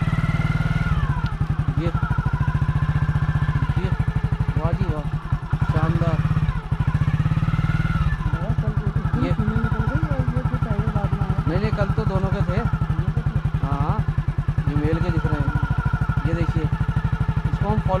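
Motorcycle engine running steadily at low speed, with an even firing beat and a brief dip in level about five seconds in.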